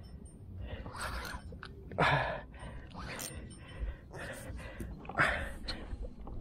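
A person breathing hard in short, noisy breaths about once a second, with a brief low grunt about two seconds in: an angler's effort while fighting a big fish on the rod.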